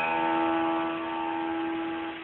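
A piano keyboard chord over a bass octave on E, held and slowly fading. The lowest note drops out before a second in.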